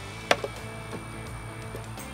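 Background music, with one sharp clack about a third of a second in as metal tongs drop a fire-roasted tomato into a blender jar.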